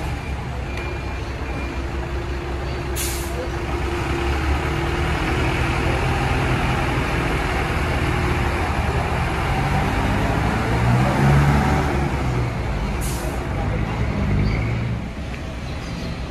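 Diesel midibus pulling away and driving past close by, its engine running steadily and growing louder as it comes nearest about eleven seconds in. Two short, sharp hisses of air from its pneumatic air system come about three seconds in and again near the end.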